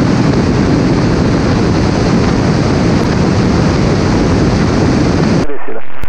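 Loud, even rush of wind over the microphone of a camera mounted outside a light aircraft (an Inpaer Conquest 180) in flight. It cuts off suddenly near the end, giving way to the quieter cabin sound.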